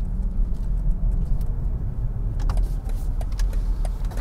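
Steady low rumble of road and tyre noise inside the cabin of a BMW X7 xDrive40d driving at low speed on 24-inch wheels with low-profile tyres. The thin sidewalls let more road noise into the cabin. A couple of faint clicks come about two and a half seconds in.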